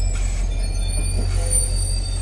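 Stainless-steel passenger cars of an arriving train rolling slowly past, their wheels squealing on the rail in several thin, high, steady tones over a low rumble.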